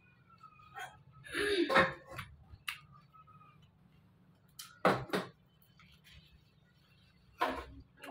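Scattered eating noises from someone eating with her fingers: a few short mouth sounds and light clicks, with three louder bursts about a second and a half, five seconds and seven and a half seconds in, over a quiet room.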